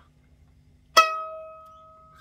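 A sharp twang about a second in as scissors are pressed on a violin's tensioned E string, which then rings out on one high note and slowly fades.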